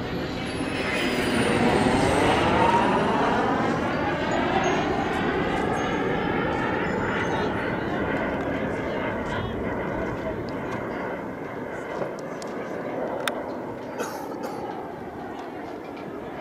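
Turbine-powered radio-control model jet flying past overhead: a jet roar with a falling high whine, loudest about two seconds in, that sweeps in pitch and slowly fades as the jet draws away.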